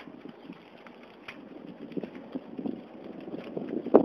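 Wind buffeting a camera microphone on a moving bicycle, in irregular gusts that grow louder toward the end, with a sharp knock just before the end.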